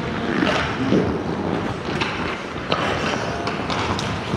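Ice hockey play: skate blades scraping across the ice under a steady wash of rink noise, with several sharp clacks of sticks and pucks scattered through it.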